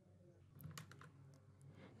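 Near silence, with a few faint clicks about half a second to a second in.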